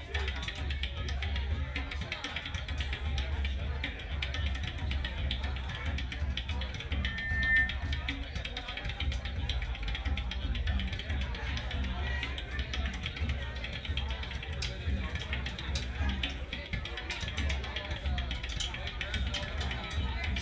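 Live funk-rock band jamming: drum kit, bass and electric guitar playing together, with a heavy, steady bass line.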